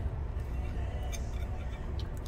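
Steady low room hum with a fork clinking and scraping against a plate, one sharp clink about a second in.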